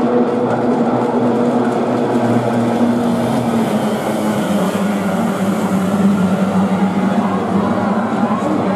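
A pack of kyotei racing boats' two-stroke outboard engines running hard together, a loud steady drone whose pitch drops a little about three and a half seconds in as the boats turn.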